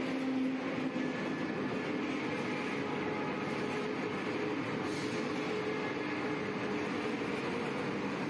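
Wire cage-making machine running, a steady mechanical noise with several faint, slightly wavering tones throughout.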